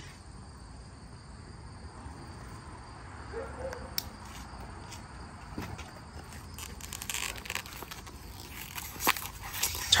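Quiet outdoor ambience with a steady high insect drone, broken by a few sharp clicks and short rustles of a small cardboard candy box being handled and opened.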